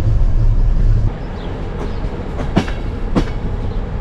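Regional passenger train running: a heavy low rumble in the carriage, which drops to a lighter running sound about a second in. Two sharp clacks of the wheels come about half a second apart near the end.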